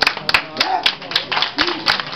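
Hands clapping, several sharp claps a few per second and not quite even, with voices over them.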